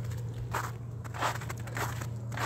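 Three footsteps on wet, patchy snow, about 0.6 seconds apart, over a steady low hum.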